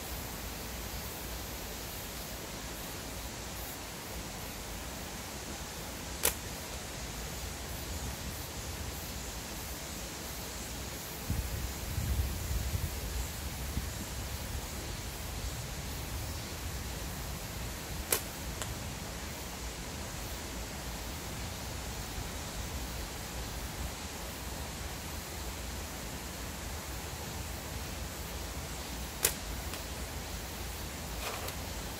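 Slingshot fired three times, each shot a single sharp snap of the released bands, about twelve seconds apart, over a steady outdoor hiss. A low rumble comes and goes a little before the middle shot.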